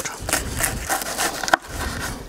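Knife cutting through a baked, cheese-topped puff pastry stick on a wooden cutting board: an irregular run of short crunchy, scraping strokes as the blade works through the flaky crust.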